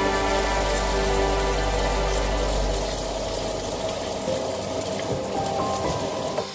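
Background music over a steady hiss of food frying in a pan as it is stirred.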